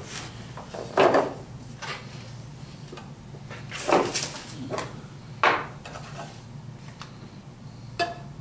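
Rummaging in a cardboard box and lifting a metal can out of it: five short scraping, knocking handling sounds spread over the seconds, over a steady low hum.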